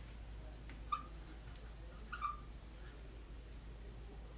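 Dry-erase marker writing on a whiteboard, squeaking briefly twice, about a second in and again a little past two seconds, with a few faint ticks over a steady low hum.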